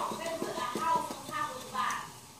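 Baking soda shaken from its box into vinegar in a foam cup, the mixture fizzing with many faint, irregular crackles and ticks.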